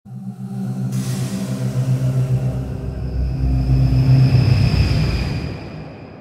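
Logo-intro music sting: held chords over a deep rumble, with a whooshing swell that comes in about a second in, builds to a peak near four seconds, then fades away.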